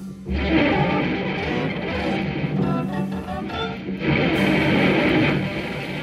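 Electric guitar, viola and drum kit playing together live. The sound drops away for a moment at the very start, then comes back dense and full, growing louder about four seconds in.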